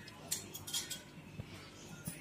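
Steel ladle clinking against a stainless steel pot of green pani puri water as it is stirred: a few light metallic clinks.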